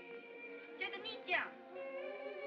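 A high voice calling out in Japanese twice, the second call loud and falling sharply in pitch, over a film score of steady held tones.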